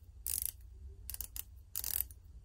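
Stainless steel unidirectional 120-click bezel of a Doxa Sub 600T dive watch being turned by hand, ratcheting in several short runs of clicks with brief pauses between them.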